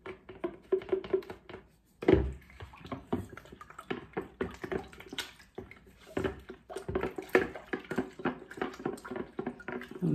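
Wooden spoon stirring pickling lime and water in a plastic pitcher: quick, irregular clicks and scrapes of the spoon against the plastic, with a sharper knock about two seconds in.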